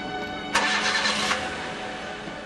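A car engine cranks and starts about half a second in, a burst of under a second with a few quick strokes. Steady background music plays throughout.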